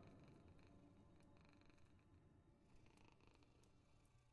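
Near silence: a pause in the narration with only a very faint low hum.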